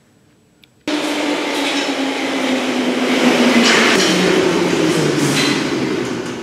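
London Underground tube train running into the platform: a loud rush of wheel and air noise that cuts in suddenly about a second in, with a motor whine falling steadily in pitch as the train slows.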